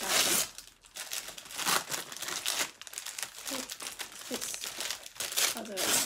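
Paper wrapping being torn and crumpled by hand as a small present is unwrapped, in irregular rustling bursts, loudest at the start and again near the end.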